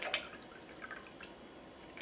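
Stirred cocktail poured from a mixing glass through a julep strainer into a lowball glass: a faint trickle and drips of liquid.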